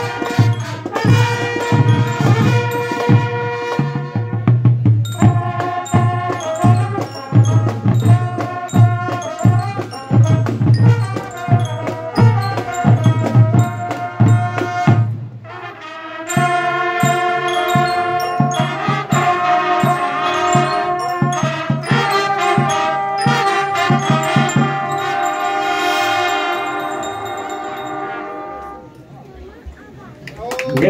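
School marching band playing: bell lyres and brass carry the melody over a steady beat of drums. About halfway the deep drum drops out and the melody goes on in held notes, and the piece ends near the end.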